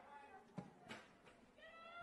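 Near silence of a football match broadcast, with a couple of faint knocks around the middle and a faint high-pitched call from the pitch near the end.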